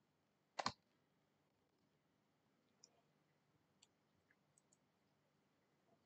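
Near silence, broken by a sharp computer mouse click, a quick double tap, about half a second in. A few faint keyboard key taps follow later as a word is typed.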